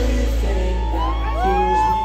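Live pop-rock band heard through a concert PA in a passage without drums: a steady deep bass under a long high note that rises and is then held from about a second in.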